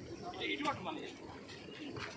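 Indistinct voices of people talking, with a short burst of talk about half a second in.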